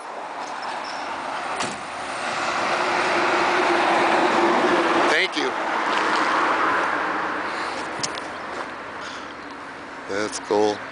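A car engine running, its sound swelling to a peak around the middle and fading again, with a short sharp sound about five seconds in.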